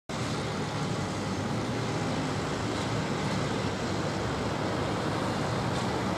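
Steady low drone of diesel machinery from concrete pump trucks running during a concrete pour, with no sudden knocks or changes.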